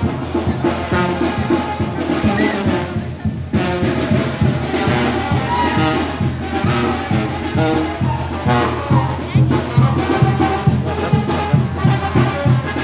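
A Oaxacan brass band (banda de viento) playing dance music live, with trumpets and trombones over a steady, regular bass beat. There is a brief break in the melody about three seconds in.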